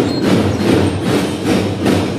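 Children's drum band snare drums beaten together in a dense, loud run of strokes.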